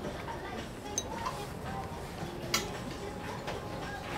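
Quiet dining-room background with faint held notes of background music, broken by two sharp little clicks, about a second in and again at about two and a half seconds, the second the louder.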